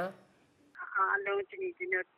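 Speech only: a woman talking over a telephone line, her voice thin and phone-quality, starting after a short pause about three-quarters of a second in.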